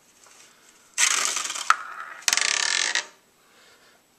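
Glass marble rolling fast around the inside of an aluminum pie plate, a rattling rolling noise that lasts about two seconds, with a sharp click partway through.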